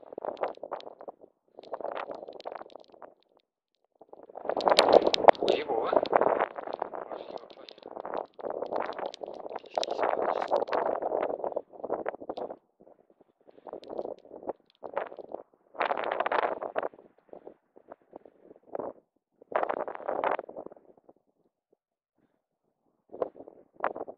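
Muffled, indistinct voice in irregular short bursts with pauses; no words can be made out.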